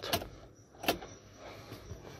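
A single sharp click about a second in, heard inside the car cabin, with no starter cranking and no engine running: the car will not start.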